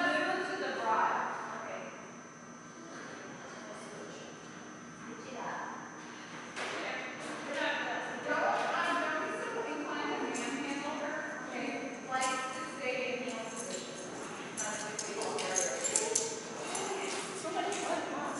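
Indistinct voices talking, echoing in a large hall, with a few sharp clicks.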